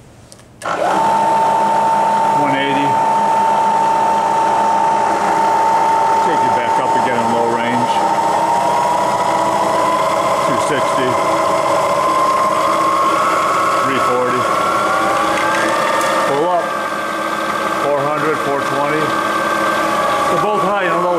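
Bridgeport Series I milling machine's 2 HP spindle motor and head starting up about a second in and running in low (back-gear) range with a steady whine. From about halfway the whine rises slowly in pitch as the variable-speed handwheel is turned up; it sounds really decent.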